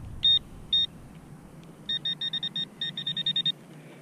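Handheld metal-detecting pinpointer beeping in the dirt of a freshly dug hole. It gives two separate beeps, then a rapid run of about a dozen beeps at the same pitch as it closes on the target, a small piece of melted lead.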